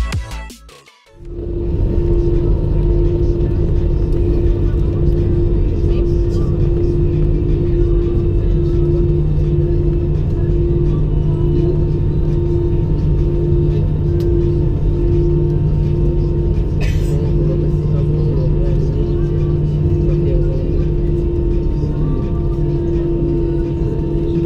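Airliner cabin noise at the window over the wing while the jet is on the ground before take-off: a steady engine hum with one constant tone over a low rumble, with no change in pitch. Intro music cuts off just after the start, and a brief click comes about two-thirds of the way through.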